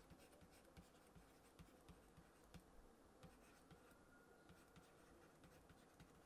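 Near silence, with faint irregular ticks and scratches of a stylus writing on a tablet, a few per second.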